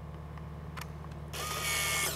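Polaroid OneStep 2 instant camera taking a picture: a faint shutter click a little under a second in, then the small motor whirring as it ejects the exposed print.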